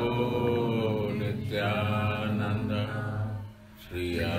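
A voice chanting a Krishna prayer in long, drawn-out notes over a steady low drone, pausing briefly about three and a half seconds in.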